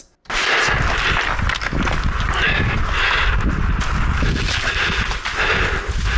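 Wind buffeting an action camera's microphone: a loud, rough rumble and hiss, starting abruptly just after the start and cutting off at the end.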